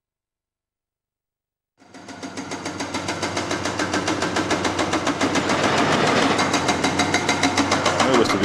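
Indeco HP 7000 hydraulic breaker on an excavator hammering into rock in rapid, steady blows, several a second. It fades in about two seconds in and builds to full level over the next few seconds.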